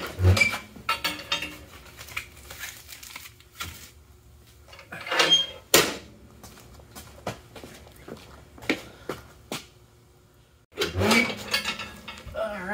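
Metal clanks and knocks from a barrel wood stove's door and the foil-wrapped part being handled, with a few louder bangs about five to six seconds in.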